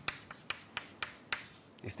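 Handwriting on a board: irregular sharp taps and short scrapes of the writing tool, a few a second, with a voice starting right at the end.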